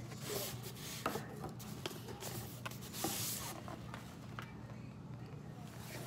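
Cardboard mailing tube being handled and turned over, with light scraping and rubbing of hands on cardboard and a few soft taps.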